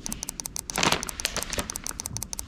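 A rapid series of light clicks from fingers tapping digits one at a time on a smartphone's on-screen number keypad. A brief rustle comes a little before the middle.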